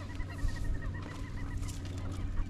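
Marsh birds calling: a fast run of short, high notes, about ten a second, over other scattered calls.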